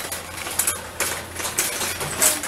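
Metal kitchenware being handled, with a run of light clinks and rattles.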